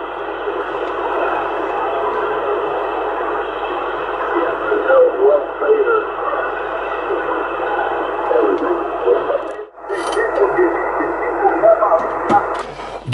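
Yaesu FT-450 transceiver receiving the 27 MHz CB band in AM through its speaker: steady static with weak, unintelligible voices buried in it. Near the end the audio drops out briefly with a click as the receiver is retuned to 27.625 MHz in USB.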